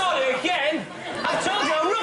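Several people talking over one another, a mixed chatter of voices.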